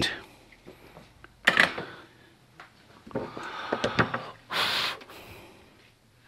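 Short breath noises from a man at close range, including a brief loud hissing breath about three-quarters of the way through.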